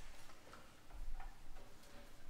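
Scattered light clicks and knocks at irregular spacing, with low rumbling thumps: small movement noises from the stage and audience while no music is playing.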